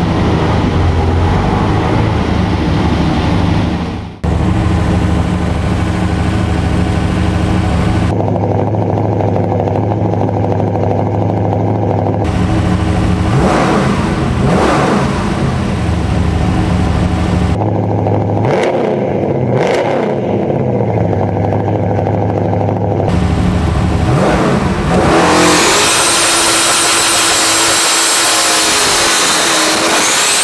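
Twin-turbocharged 572-cubic-inch Chrysler Hemi V8 in a 1968 Dodge Charger running as the car is driven on the street: a steady rumble, with the pitch rising and falling with the revs several times. Near the end the engine sound gives way to a rush of wind noise with a thin high whine.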